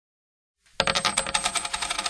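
A shower of metal coins clinking and jingling in quick succession, starting under a second in, with a ringing metallic note held through it.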